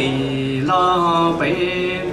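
A man chanting a Hmong txiv xaiv verse into a microphone, amplified through the PA, holding long steady notes and sliding to a new pitch about every two-thirds of a second.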